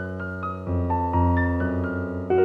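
Slow, soft piano music: sustained chords with single notes entering one after another, and a low bass chord swelling in under them partway through.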